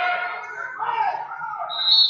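A referee's whistle blows once, a short, loud, steady blast near the end, over voices in a large, echoing wrestling hall.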